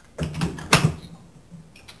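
A dishwasher's silverware basket being lifted out and handled against the rack: a few light clicks and knocks, the sharpest about three quarters of a second in.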